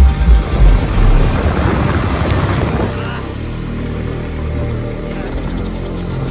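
Motorcycle engine running on the move with wind noise. Background music with a beat is heard over it at first and drops away about three seconds in, leaving the steadier engine hum.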